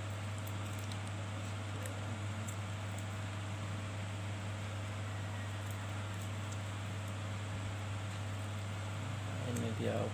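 A steady low hum under an even hiss, with faint scattered ticks as a plastic-wrapped WiFi repeater is turned over in the hands.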